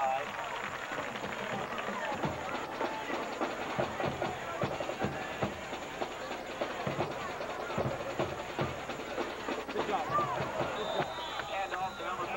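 Crowd noise from the stands of a high school football game: many voices talking and calling out at once, with a short high whistle tone near the end.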